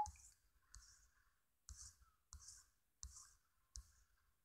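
Faint clicking, about six clicks spaced roughly two-thirds of a second apart, from the computer input device as drawn strokes are erased on a digital whiteboard.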